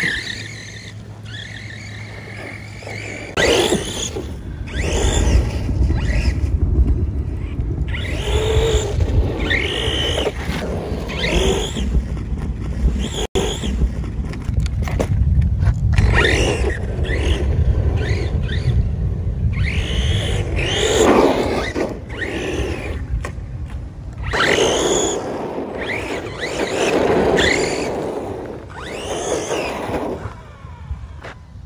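Redcat Kaiju RC monster truck's brushless motor whining as it is revved up and down again and again, in short rising-and-falling bursts, with rumbling tyre and chassis noise as it drifts over wet ground.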